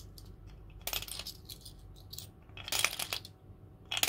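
Coins dropped one at a time into a clear plastic piggy bank, clinking against the coins already inside: two sharp clinks, about a second in and near three seconds.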